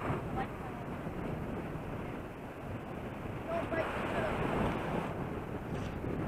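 Steady wash of ocean surf, with wind rushing across the microphone; the wash swells a little in the second half.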